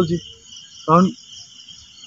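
Night insects such as crickets chirring in a steady high-pitched drone. A single short syllable of a person's voice cuts in about a second in.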